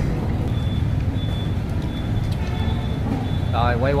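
Steady low background rumble, with faint high-pitched beeps recurring about every half second; a voice starts near the end.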